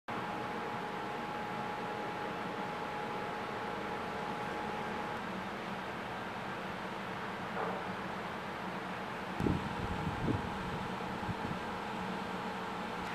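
Steady outdoor background hum and rush, with a faint steady tone that fades out about five seconds in. A few short low thumps come near the end.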